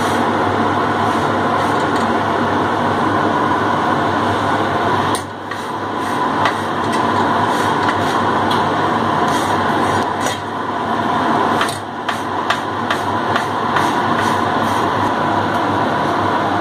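A loud, steady rushing noise throughout, with faint scattered taps and scrapes as a hand presses a thick wheat-flour roti down on a hot iron tawa.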